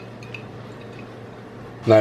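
Balsamic vinegar drizzled from a bottle onto salad leaves: a faint liquid trickle over a steady low background hum.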